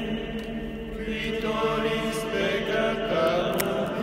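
Slow liturgical chant: a voice sings over steady held notes that sound throughout.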